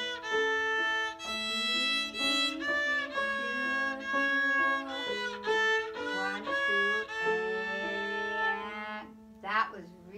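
Beginner's small violin being bowed, playing a line of short notes with a few longer held ones, over a lower sustained part. The playing stops about a second before the end and a voice follows.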